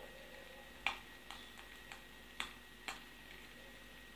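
Quiet room tone with a handful of short, faint clicks at uneven intervals, the first and clearest about a second in.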